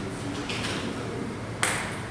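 A table tennis ball bouncing once on the table, a single sharp click about one and a half seconds in, while the player readies to serve.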